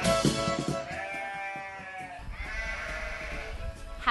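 String-band music with fiddle and guitar fades out in the first second. A goat then bleats in long, drawn-out calls.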